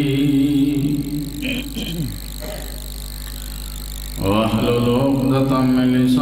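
A man's voice chanting an Arabic invocation through a microphone and loudspeakers, in long, drawn-out melodic notes. The chant drops away for about two seconds midway, then the next phrase begins. A low electrical hum runs underneath.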